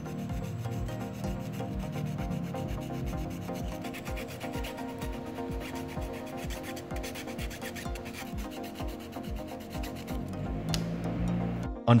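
Sanding sponge rubbed back and forth in quick, even strokes over the teeth of a 3D-printed plastic ring gear. The contact surfaces are being sanded down because the fit to the cycloidal discs is too tight. Steady background music plays underneath.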